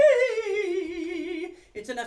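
A woman singing a simple scale with vibrato, coming down from the top note and ending about one and a half seconds in, in a small practice room. Her speaking voice starts just before the end.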